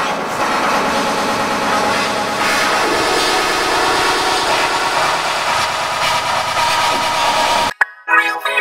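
A pop song sped up about a million times over, so that it collapses into a dense, steady wall of noise with no tune or voice left in it. It cuts off suddenly near the end.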